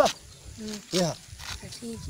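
A person's voice in short calls or exclamations: a few brief syllables with pauses between.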